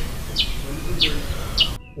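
A bird chirping three times, short high chirps about every half second, over a low outdoor background rumble that cuts off abruptly near the end.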